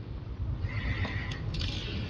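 Low room hum with rustling and a brief high squeak about a second in, as a man gets up from a wooden bench.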